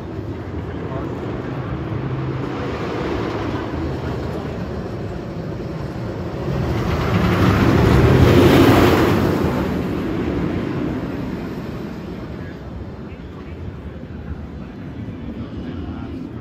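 Steel Vengeance, a Rocky Mountain Construction steel-and-wood hybrid roller coaster, with its train passing close overhead on the steel track: a rumble that builds for a couple of seconds, peaks about eight to nine seconds in, and fades away.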